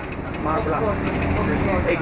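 Double-decker bus engine running with a steady low rumble, heard from inside the upper deck, with people's voices talking over it from about half a second in.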